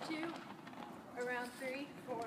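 A woman's voice speaking, quieter than the surrounding talk, with no words made out.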